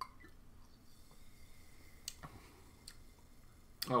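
Faint swallowing and mouth clicks from a man drinking soda from a plastic bottle, with a few separate small clicks about two and three seconds in. A voice says "oh" right at the end.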